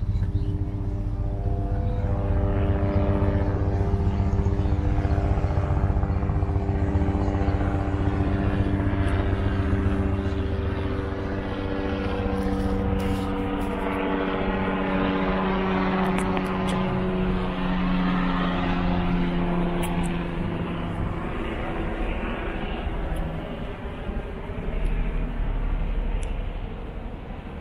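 An aircraft flying low overhead: a droning engine note made of several steady tones that slowly falls in pitch as it passes, fading out about twenty seconds in.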